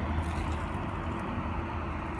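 A steady low hum under a faint even background noise, with nothing sudden in it.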